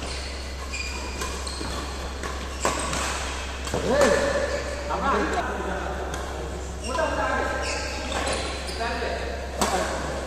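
Badminton rackets striking a shuttlecock in a doubles rally, a string of sharp hits in a reverberant hall, with players calling out in the middle of the rally.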